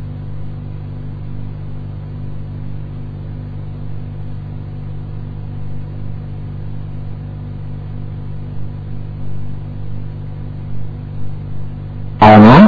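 A steady, unchanging low hum with an even hiss over it.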